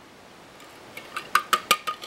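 A whisk clinking against a mixing bowl as the bowl is tipped to pour pie filling: a quick run of about six light clinks in the second half, after a quiet first second.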